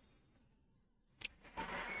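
Near silence broken once, about a second in, by a single sharp computer mouse click, followed by faint noise rising toward the end.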